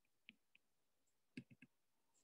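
Near silence with a few faint clicks of a stylus tip tapping on a tablet's glass screen during handwriting: a single tap early, then three quick taps about a second and a half in.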